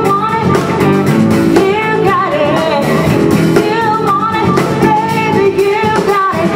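Live band playing an upbeat pop-rock cover on drum kit, keyboard and guitar, with a sung vocal line over it.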